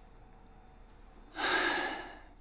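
A single audible breath from a man, about one and a half seconds in, lasting under a second, just before he speaks.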